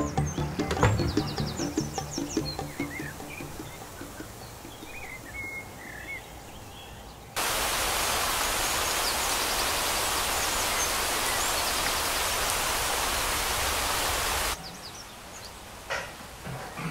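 Water hissing steadily from a garden hose spray for about seven seconds, starting and stopping abruptly. Before it, music fades out into quiet outdoor background with a few bird chirps.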